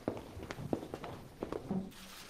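Footsteps of several people walking on a hard floor: a handful of sharp, irregular steps.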